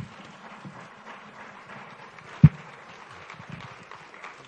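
Faint room noise with small shuffling movements, and one sharp low thump about two and a half seconds in from a handheld microphone being bumped as it is handled.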